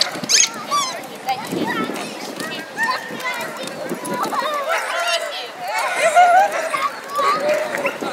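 Crowd of onlookers chattering, with dogs barking among them.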